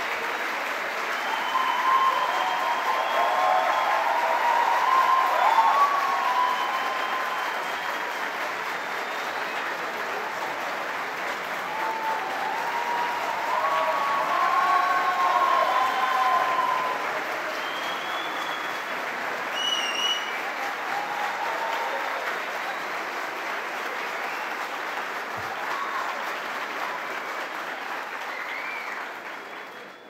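Large audience applauding at length, with cheering voices over the clapping, loudest about five seconds in and again around fifteen seconds in, dying away near the end.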